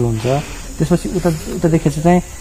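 A man talking steadily.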